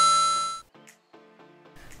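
A bright chime sound effect: two quick notes, the second a step higher, ringing out and fading within about half a second, followed by a faint stretch of soft background music.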